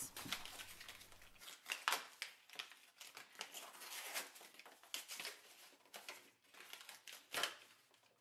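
Sparkly gray wrapping paper being torn off a small cardboard gift box by hand: fairly faint, irregular ripping and crinkling, with a few louder tears along the way.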